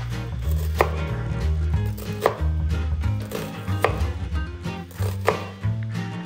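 A chef's knife cutting a red onion on a wooden cutting board: four strokes about a second and a half apart, each ending in a sharp tap on the board, over background music.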